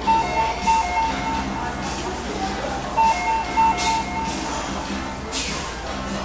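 A short electronic chime tune of a few clean notes plays, then plays again about three seconds later. Two brief hissy clatters come near the end of the second one and just after it.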